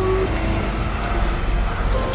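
Deep rumbling noise from a spooky intro soundtrack, with a few faint held notes over it.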